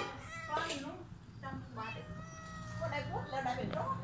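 A cat meowing several times, with one long drawn-out meow about two seconds in.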